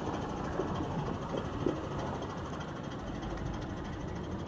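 Steady outdoor background noise with the low hum of an idling vehicle engine. A couple of faint short sounds come about half a second and a second and a half in.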